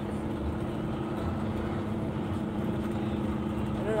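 Semi truck's diesel engine running steadily with tyre and road noise on a gravel road, heard from inside the cab as a constant hum.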